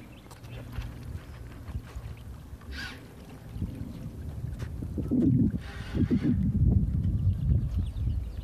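Wind buffeting the microphone outdoors by open water, a gusty low rumble that grows stronger in the second half.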